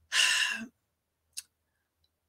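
A woman's breathy sigh, lasting about half a second, followed about a second later by a single faint click.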